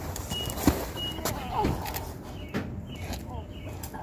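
Scattered knocks and clunks of gloved hands taking hold of a steel-framed wooden gate, with two short high beeps in the first second or so.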